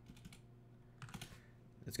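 A few faint computer keyboard key presses, clustered about a second in.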